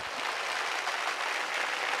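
Audience applauding steadily: a dense, even patter of many hands clapping.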